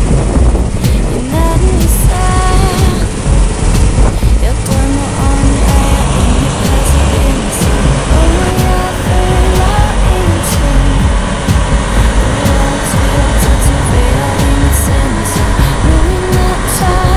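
Loud music with a heavy, dense bass and a melody of short held notes that step up and down.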